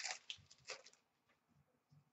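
Near silence, with a few faint, short rustles of trading cards being handled in the first second.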